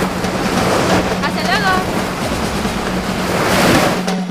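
Surf washing onto a sandy beach, with wind buffeting the microphone. The noise swells near the end.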